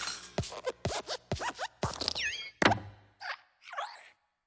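Cartoon sound effects of the Pixar Luxo Jr. lamp hopping: a quick run of springy thuds and squeaks with falling pitch, and the loudest thud about two-thirds of the way in as it lands.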